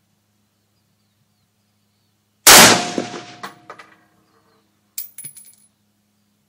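A single 7.62x39mm shot from a Century Arms GP WASR-10 AK-pattern rifle: one sharp, very loud report whose ringing tail dies away over about a second and a half. About two and a half seconds later come a few light metallic clinks.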